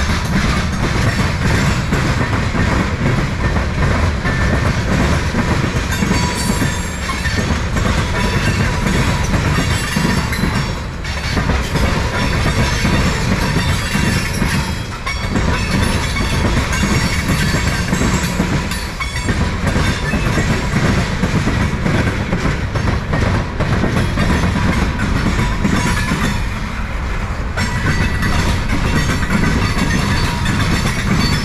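Freight cars of a CSX manifest train rolling past at close range: a steady rumble and clatter of steel wheels on the rails and over the diamond crossing, with a few brief lulls.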